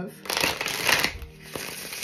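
A deck of tarot cards being shuffled by hand: a dense rattle of cards for about a second, then softer, scattered card clicks.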